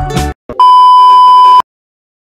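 Intro music stops a moment in, followed by a loud, steady electronic beep lasting about a second, one unchanging tone that cuts off sharply.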